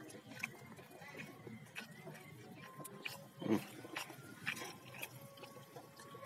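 A domestic cat gives one short, low meow about three and a half seconds in, over small clicks and crinkles from hands working rice on a paper food wrapper.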